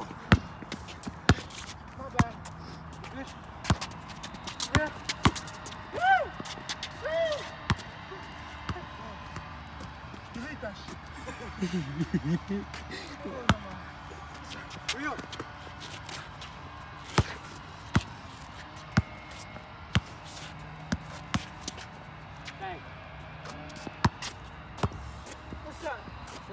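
A Wilson basketball bouncing on a concrete court as it is dribbled: sharp, irregular bounces spread through the stretch, some in quick runs.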